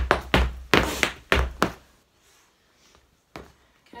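Irish dance hard shoes striking a floor mat in a quick run of taps and stamps from a hornpipe step. The run stops a little under two seconds in, and a single tap comes near the end.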